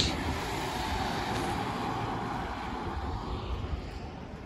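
A vehicle going by on a wet road, tyre noise loudest at the start and slowly fading away.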